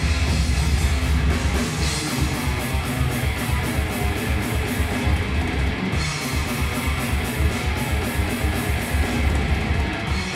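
Heavy metal band playing live: distorted electric guitars over a drum kit, with fast, even bass-drum beats.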